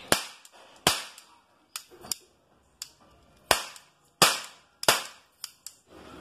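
Toy cap-gun revolver firing ring caps: about five loud, sharp cracks at uneven intervals, with fainter clicks between the shots.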